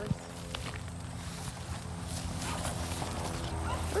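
Footsteps through long grass while a pop-up mesh enclosure is carried, with one sharp knock just after the start and a steady low rumble.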